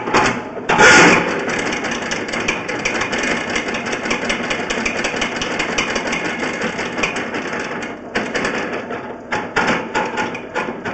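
Drain-cleaning machine running, its spinning cable rattling and clattering against sand packed in the sewer line. The run starts about a second in and stops near the eight-second mark, with irregular knocks and clicks before and after it.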